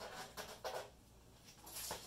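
Short bursts of rustling and scraping as scooter parts are handled in their packaging, the longest near the end.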